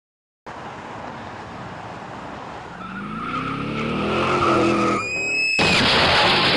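A vehicle engine revving up, rising in pitch, with a high tyre screech over it, then a sudden loud crash about five and a half seconds in.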